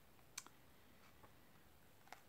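Near silence: room tone, with one short click near the start and a fainter tick later.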